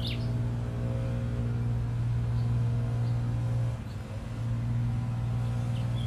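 Steady low mechanical hum of outdoor background machinery, dipping briefly about four seconds in.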